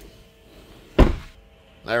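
A single sharp thunk about a second in, from the rear door of a 2014 Chevrolet Cruze being pushed open.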